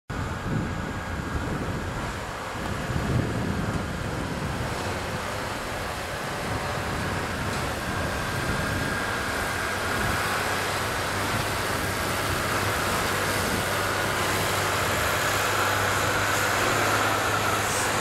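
Self-propelled boom sprayer's engine running as the machine drives across the field, a steady mechanical drone that grows gradually louder as it comes closer.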